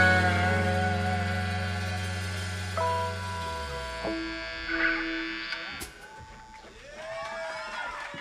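A live rock band's closing chord ringing out on electric guitars and bass, fading away over the first few seconds. A few separate held notes sound as it dies, and the sound drops low near the end.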